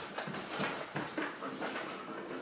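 A dog's paws scuffing and tapping several times on a cardboard box as it turns around on top of it.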